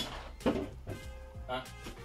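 Background music with steady sustained tones, under a brief spoken "huh?" near the end. There is a short sharp click about half a second in.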